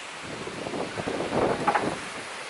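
Gusty wind buffeting the camera's microphone, a rushing noise that grows louder in the second half.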